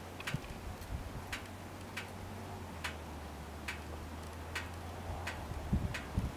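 Quiet, sharp ticks about every three quarters of a second over a steady low hum.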